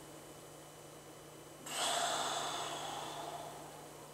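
A man taking a deep, audible calming breath: a long breath out begins suddenly about two seconds in and fades away over the next two seconds.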